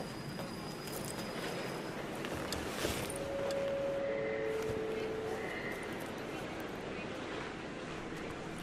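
Indistinct voices over a steady, noisy background, with scattered light clicks and a couple of short steady tones about halfway through.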